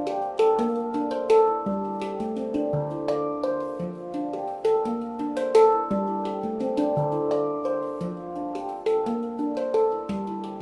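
Aura Maelstrom handpan played with the hands: a repeating bass line on the low notes and ding runs about once a second under quicker melodic strikes and sharp taps, the steel notes ringing on over one another.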